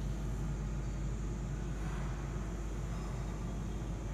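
Steady low background rumble, with faint scraping of chalk on a blackboard as a long line is drawn, strongest about two seconds in.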